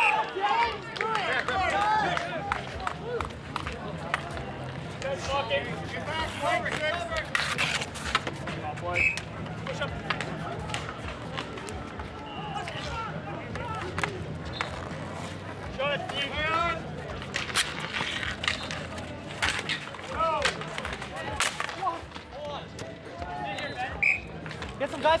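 Voices of street hockey players and onlookers talking and calling out, with a few sharp clacks.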